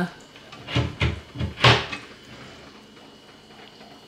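Wooden aquarium cabinet door with a magnetic push-to-open catch being pushed and swinging open: a quick run of about four clicks and knocks within a second, the last the loudest.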